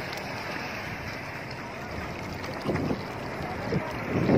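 Wind buffeting the microphone over the wash of shallow sea water around the camera, with a short louder rush about three quarters of the way through.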